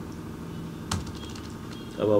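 A single computer keyboard keystroke about a second in, over a low steady hum.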